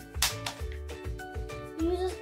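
Background music with a steady beat and held tones.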